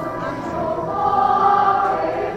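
A choir singing a slow hymn during communion, holding long sustained notes.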